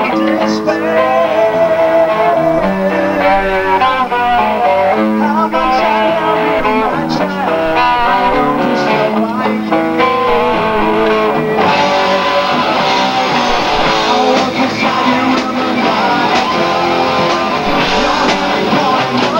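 A live heavy metal band playing, with electric guitar lines over bass and drums. About two-thirds of the way through, the sound turns brighter and denser as the full band comes in harder.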